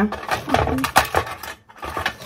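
Rustling and light clattering as a handful of sponge-finger biscuits is handled and laid into a baking tin, in irregular strokes that fade out near the end.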